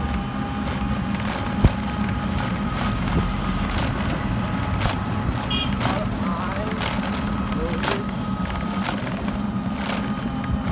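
A vehicle runs steadily while moving along a road: a constant low drone with a faint steady whine above it, broken by occasional light clicks and rattles.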